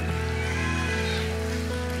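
Soft live worship band music: steady held chords over a low bass, playing quietly underneath.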